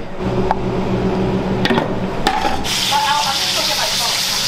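Oil poured into a steel pan on a gas burner, then chopped red onion hitting the hot oil and frying: a loud, steady sizzle starts about two and a half seconds in.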